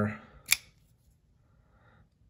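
A single sharp click about half a second in: the blade of a Rough Ryder RR1820 assisted-opening folding knife snapping open.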